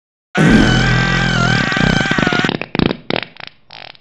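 Cartoon fart sound effect: one long, loud blast that starts about a third of a second in, then breaks into sputtering bursts that trail off near the end.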